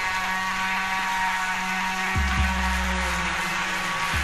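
Breakdown in an old-skool house track: sustained synth chords with no beat, broken about two seconds in by two deep falling bass hits, with another at the end.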